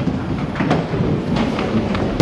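Ninepin bowling balls rolling down the lanes with a steady, train-like rumble, broken by a few sharp knocks.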